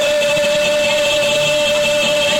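A male singer holding one long, steady note into a microphone over music.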